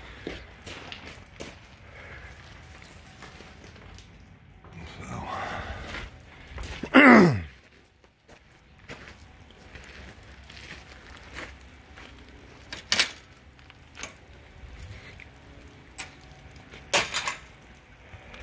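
Footsteps and handling noise while walking, with scattered knocks and clicks. About seven seconds in comes one loud, short squeal that falls steeply in pitch.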